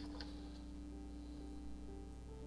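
Soft ambient synth music with long held notes that shift slowly in pitch. One faint click sounds about a fifth of a second in.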